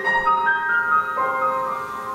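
Grand piano playing slow, ringing notes in a quiet improvisation, new notes entering a few times and sustaining between the singer's phrases.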